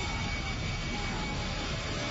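Huge fireball from an exploded styrene tanker burning: a steady, dense rushing noise with a heavy low rumble.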